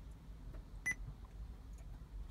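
A Joying Android car stereo head unit gives one short, high touchscreen key beep about a second in, confirming a tap on its screen.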